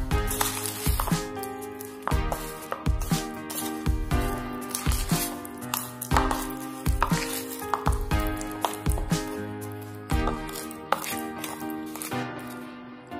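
Background music with sustained notes, over repeated clicks and scrapes of a metal spoon against the bowl as a soft mixture of egg yolk, margarine and powdered sugar is stirred.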